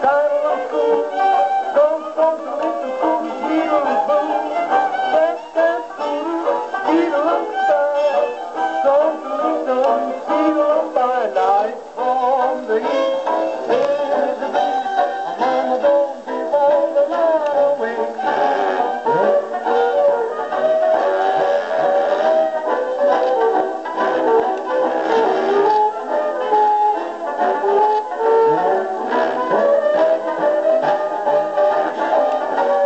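A 1927 Victor 78 rpm jug band record playing on a Victor VV-1-90 phonograph: continuous jug band music, thin and boxy with almost no bass.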